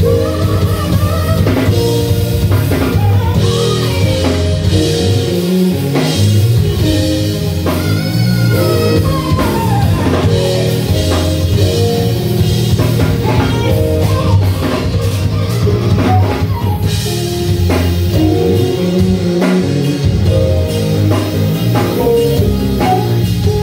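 A live band playing continuously: drum kit, electric bass and keyboard, with a melodic lead line wandering above them.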